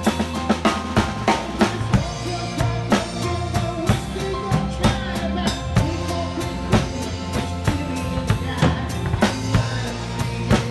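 Rock drum kit played live with sticks, with kick, snare and cymbal strikes in a steady beat, over the band's sustained bass and chords.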